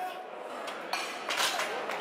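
Loaded competition barbell clanking as it is racked onto the squat stand's hooks after a completed squat, several short metallic clinks, with crowd voices behind.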